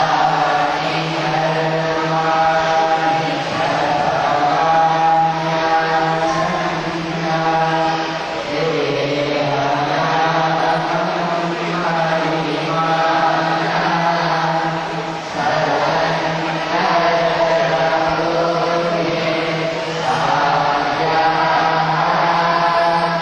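Group of voices chanting a devotional chant in phrases over a steady, unchanging drone.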